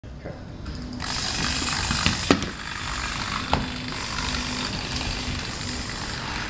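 EZ-Robot JD humanoid robot's servos whirring as it moves from lying face down to standing, a steady buzz from about a second in, with three sharp clicks of its plastic limbs knocking, two close together near two seconds in and one at about three and a half seconds.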